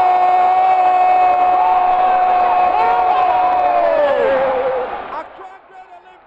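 A football commentator's long drawn-out shout of "goal", held on one pitch for about four seconds, then wavering and dropping away, with other shouts briefly behind it.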